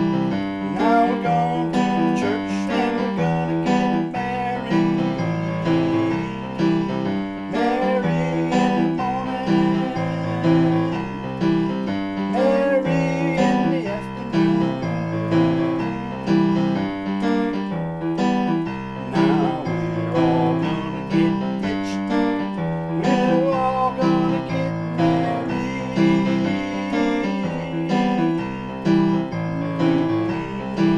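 Digital piano playing a country song: a regular rhythm of chords with a melody line over them.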